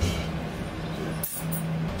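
Valve of a disposable helium tank being opened, with short hisses of escaping gas about a second in, over a low steady hum.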